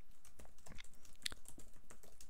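Typing on a computer keyboard: a quick, uneven run of keystroke clicks.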